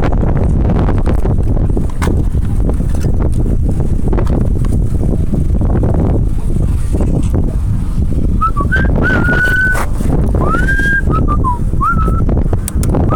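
Wind buffeting the microphone of a bike-mounted camera while riding, a loud steady rumble. In the last few seconds someone whistles a few short high notes, some held and some gliding.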